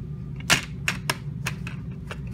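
Sharp plastic clicks from a DVD case as a hand works the disc off its centre hub: about five snaps, the loudest about half a second in.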